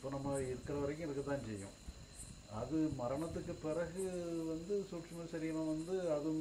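A man speaking Tamil in a slow, measured voice, with a short pause about two seconds in. Faint high chirps repeat in the background about twice a second.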